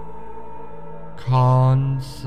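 Slow ambient meditation music of sustained, drone-like held tones. A louder held note comes in just past a second in.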